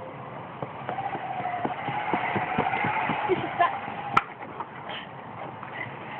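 Playground zip wire trolley running along its steel cable: a rolling whirr with a faint steady whine that builds over the first couple of seconds and fades after about four, with a sharp knock about four seconds in.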